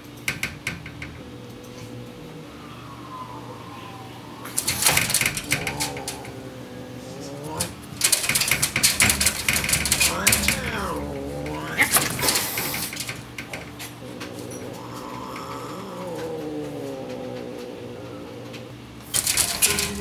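Cats yowling at each other through a screen door: several long, wavering, drawn-out howls in turn. Between them come short bursts of the screen door rattling as a cat paws at it.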